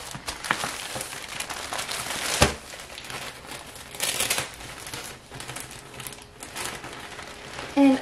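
Clear plastic poly bag around a packaged baseball jersey crinkling as it is handled and moved across a table, with a sharp thump about two and a half seconds in and a louder burst of crinkling around four seconds.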